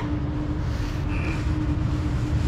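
A steady low rumble with a constant hum underneath; no wrench clicks or knocks stand out.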